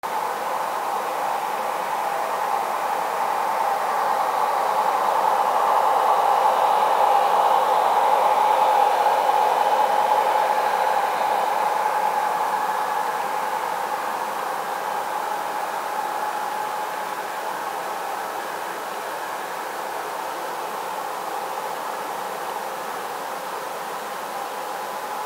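Model freight train running past on the layout track, a steady whirring rumble of wheels and locomotive motors that swells as the diesel locomotives come close, about a quarter of the way in, then eases to a steady lower level as the cars roll by.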